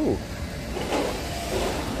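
A vehicle passing along the street, an even rushing noise that swells after a short spoken 'oh'.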